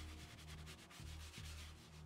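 Faint scrubbing of a stiff-bristled leather brush on a leather car seat, working in a gel leather soap.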